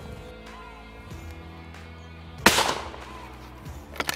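A single shotgun shot about two and a half seconds in, fading over about half a second, over background music with steady held notes.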